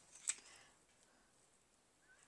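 A faint handling sound as a scrub sponge is brought onto a stainless steel pot: one short click about a third of a second in, a soft rustle, then near silence.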